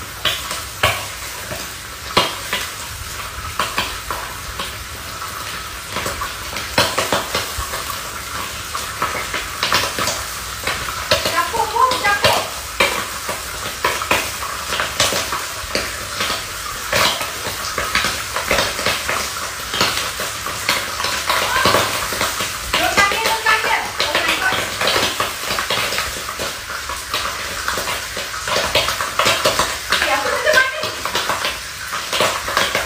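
Kitchen clatter: utensils, pots and dishes knocking again and again at an uneven pace, over a steady hiss.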